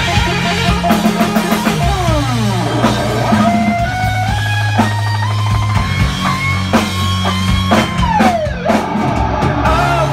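Live rock band playing an instrumental passage with electric guitar, bass and drums. A lead guitar line climbs in steps through the middle, then slides down in a long glide near the end, over held bass notes and steady drumming.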